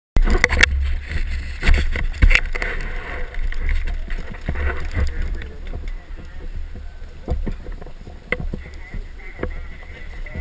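Wind buffeting the microphone in a fluctuating low rumble, with several sharp knocks in the first couple of seconds from the camera being handled, over an indistinct murmur of people talking.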